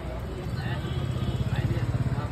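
A vehicle engine running, its low, fast-pulsing sound growing louder from about half a second in, under faint voices.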